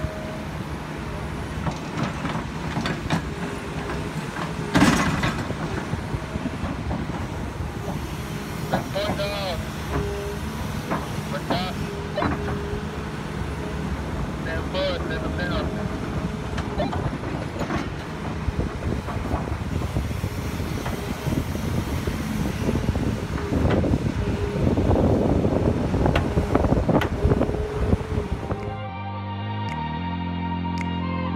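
Tracked excavator working at a dig: its engine runs steadily under a clatter of knocks and clanks, with a sharp knock about five seconds in and a louder stretch near the end. About a second before the end it gives way to music.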